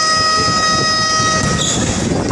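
Basketball game horn from the scoreboard sounding one long steady electronic tone, which cuts off about one and a half seconds in.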